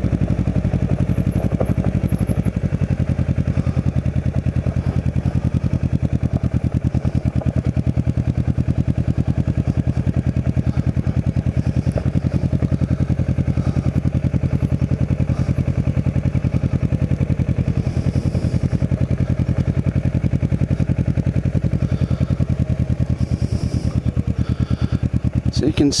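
Kawasaki Ninja 650R's parallel-twin engine running steadily at low revs, its pitch holding level as the bike rolls slowly over gravel.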